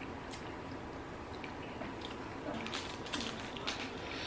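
Close-miked chewing of sauced chicken: faint wet mouth clicks and squishes that come and go a few times.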